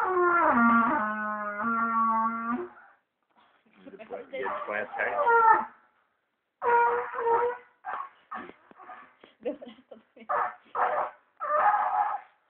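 A toddler blowing into a trumpet, producing rough, wavering brass honks. The first note is the longest, at about two and a half seconds: it drops in pitch and then holds. Shorter, broken blasts with pauses between them follow.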